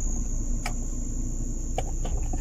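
Crickets chirring in one steady, high-pitched note, over the low rumble of a slowly moving car.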